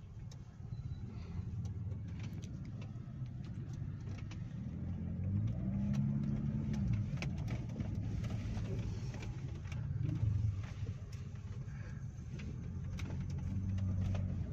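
Traffic and engine rumble heard from inside a car cabin while driving slowly through busy traffic. A low engine note rises and falls about five to seven seconds in.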